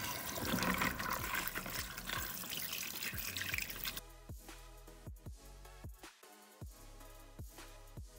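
Water running from a tap for about four seconds, stopping abruptly, over background music with a steady beat; after that the music plays alone.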